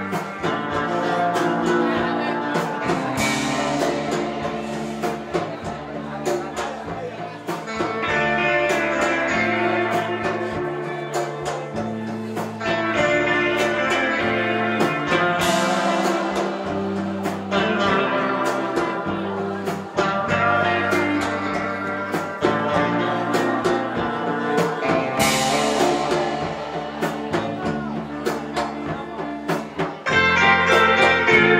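A live rautalanka band playing instrumental guitar music: electric lead guitar over electric bass and a drum kit keeping a steady beat.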